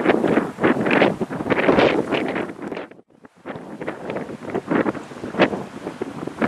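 Wind buffeting the camera microphone in irregular gusts, dropping out to near silence for about half a second midway where the recording cuts.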